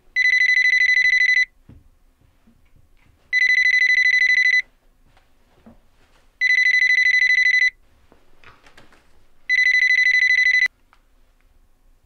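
Telephone ringing: four trilling electronic rings, each a little over a second long, about three seconds apart, for an incoming call.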